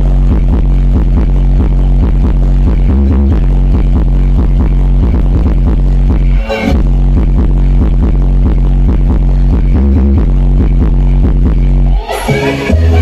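Loud electronic dance music (an Indonesian DJ remix) played through the Brewog Audio outdoor sound system's stacked speakers and subwoofers, with heavy booming bass and a fast driving beat. The music drops out briefly with a sweeping effect about halfway through, then the beat comes back in.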